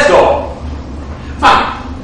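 Speech only: a man's short, clipped spoken syllables, one right at the start and another about one and a half seconds in, over a steady low hum.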